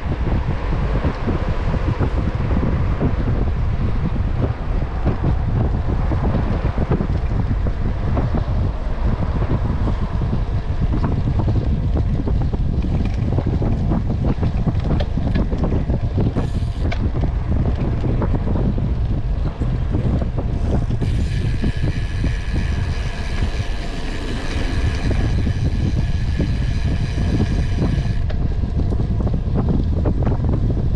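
Steady rush of wind on the microphone of a handlebar-view camera on a moving road bike. For about seven seconds in the second half a steady high-pitched buzz sits over the wind.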